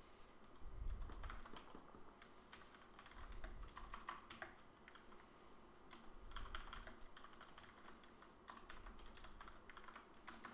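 Faint typing on a computer keyboard: short runs of key clicks with brief pauses between them.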